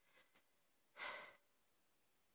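A woman's short breathy sigh about a second in, with a faint click just before it.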